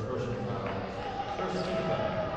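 Court sound in a gymnasium during a women's basketball game: several voices of players and people courtside, with a basketball bouncing on the hardwood floor.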